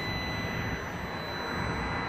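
Steady rushing background noise with a faint, steady high-pitched whine, swelling slightly near the end.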